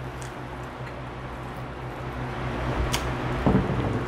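Steady low hum and faint hiss, with a light click about three seconds in and, just after it, a short hummed "mm" from someone eating hot food.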